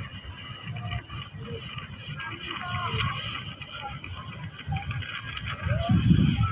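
Harbour ambience: a low, uneven rumble with faint distant voices.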